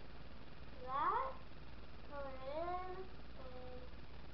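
Three short, high-pitched wordless vocal sounds that slide in pitch. The loudest, about a second in, rises steeply, the next dips and then rises, and the last is short and level.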